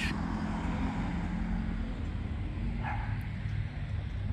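A steady low engine hum, with one brief higher call, like a bark, about three seconds in.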